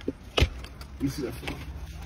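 A single sharp thump about half a second in, with faint voices afterwards.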